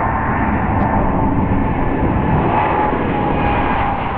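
Jet airliner's engines at takeoff power as the plane speeds down the runway and lifts off: a steady, loud rumble with a faint whine on top.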